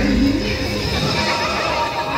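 Show soundtrack playing through loudspeakers: film music with a character's drawn-out vocal cry, which glides down and back up in pitch in the first half second.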